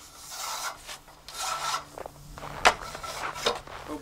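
Telescoping metal roof-rake pole being pulled out section by section: the tubes slide against each other with a rasping scrape, twice, then give a sharp click a little over halfway through and a lighter one after.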